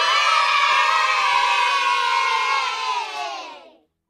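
A crowd of children cheering together in one long shout that sinks slightly in pitch and fades out near the end; it starts suddenly out of dead silence and ends in dead silence, as an edited-in cheer does.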